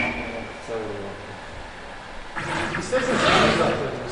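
Men talking indistinctly in a workshop, with a steady high tone that stops about half a second in.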